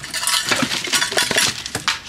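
A metal tin coin bank being handled and shaken, its contents clinking in a quick run of irregular clinks, a sound that suggests it might hold money.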